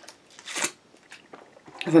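Drinking from a plastic water bottle: soft sipping and small plastic clicks, with one brief louder hiss about half a second in.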